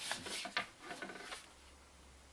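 Pencil drawing short strokes on thin cardboard: a scratchy rubbing with a few sharper scrapes, which stops about a second and a half in.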